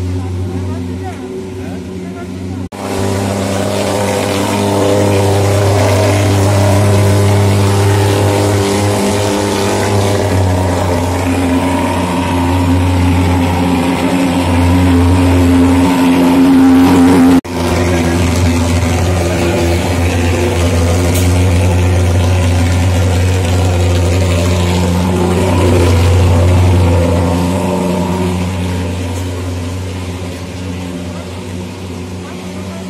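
Handheld thermal fogging machine with a pulse-jet engine, running with a loud, steady low drone while it sprays insecticide fog. The drone cuts out for an instant twice, about three seconds in and again past the middle.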